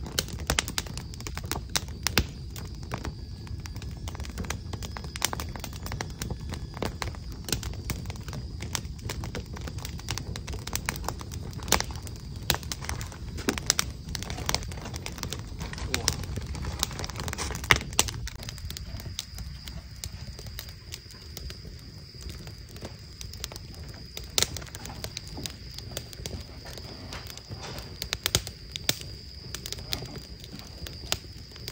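Crackling wood fire: a steady run of small irregular pops and snaps over a low rumble.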